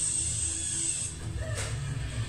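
A high, steady drill whine for about the first second, the whirring head drill of the Tunneler puppet, over a low music score, heard through a TV speaker.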